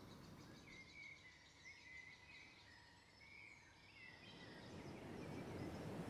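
Near silence: faint outdoor ambience with a few distant bird chirps, the background noise growing louder near the end.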